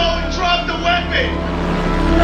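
A woman crying out in distress, high wavering cries that break off a little over a second in, over a low steady hum.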